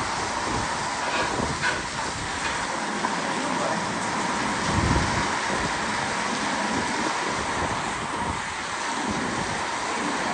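Heavy rain falling steadily on the roof overhead, a dense, even noise with no let-up.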